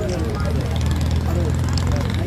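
A steady low engine drone with several people talking in the background.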